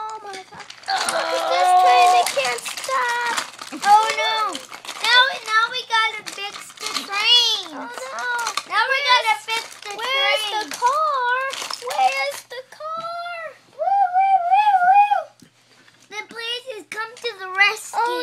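A young child's high-pitched voice making wordless sung-out play sounds that glide up and down in pitch, with a held, wavering note about three-quarters of the way through. Light clicks of wooden toy trains being handled run underneath.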